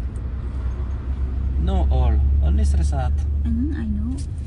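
Steady low rumble of a car's engine and road noise heard inside the cabin, swelling a little midway, with a woman talking from about halfway through.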